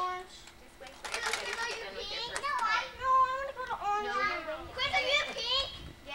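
Young children's voices: high-pitched chatter and calls with no clear words, starting about a second in.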